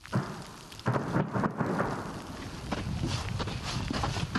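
Distant explosions from an AGS automatic grenade launcher firing: a sudden bang at the start, more dull bangs about a second in and again near the end, over a continuous rolling rumble.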